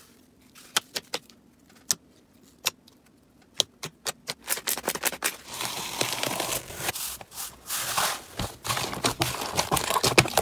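Slime worked by hand: scattered sharp pops and clicks as a soft white slime is stretched and squeezed. About halfway through comes a denser crackling as a blue cloud-type slime is peeled back from its plastic tub.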